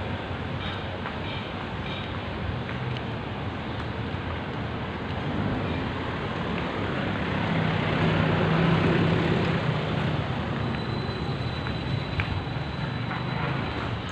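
Street traffic noise with vehicle engines running, a steady rumble with a low engine hum that grows louder for a couple of seconds about eight seconds in, as a vehicle passes or revs close by.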